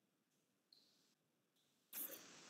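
Near silence, with one faint, short high blip about three quarters of a second in.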